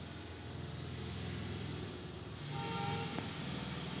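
Low, steady background rumble of traffic, with a short vehicle horn honk about two and a half seconds in.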